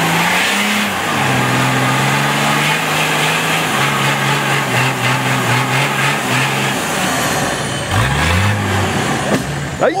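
Nissan Patrol 4x4's engine held at steady low revs as it crawls up a steep muddy bank, then revved up about eight seconds in as it climbs.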